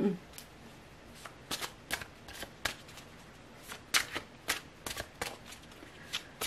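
A deck of tarot cards being shuffled by hand: a string of irregular sharp card snaps and slaps, about a dozen of them.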